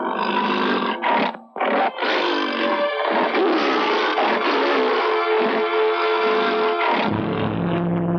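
A tiger's short roars and snarls over tense film background music: separate bursts in the first two seconds, then the orchestral score swells and holds, with a low drone coming in near the end.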